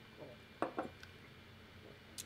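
Two quick knocks of stemmed whiskey tasting glasses being set down on a wooden bar top, about a quarter second apart.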